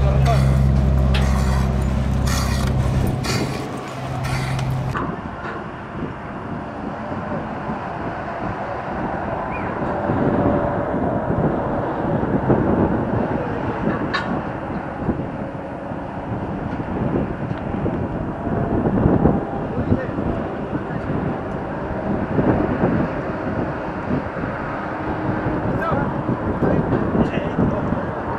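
Indistinct voices of people talking over steady outdoor background noise that swells and falls.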